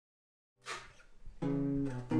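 Guitar: after a faint touch of the strings, a single low note is plucked about one and a half seconds in and left ringing, as the guitar's tuning is checked.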